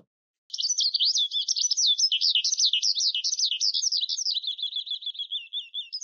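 Songbird twittering: a fast, unbroken run of high chirps, starting about half a second in, dipping a little lower and fainter near the end.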